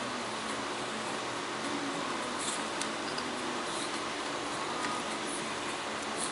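Steady room hiss with a few faint ticks and rustles as insulated electric-motor leads with crimped metal terminals are handled and sorted by hand.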